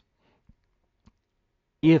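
Near silence with two faint, short ticks about half a second apart, then a man's voice starts just before the end.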